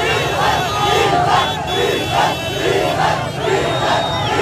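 A large crowd of supporters shouting slogans together in a steady, repeating rhythm.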